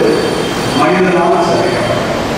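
A man's voice preaching a sermon, amplified through the pulpit microphone.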